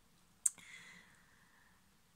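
A single sharp click a little under half a second in, followed by a faint hiss that fades away, over quiet room tone.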